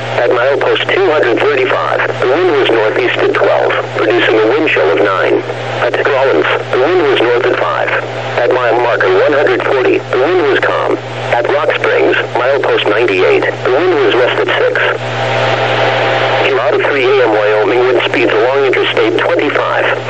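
Speech only: a NOAA Weather Radio broadcast voice reading out wind reports, received over a radio with a steady low hum underneath.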